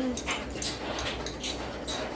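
Olive brine trickling and splashing unevenly from a glass olive jar into the liquid in a slow cooker.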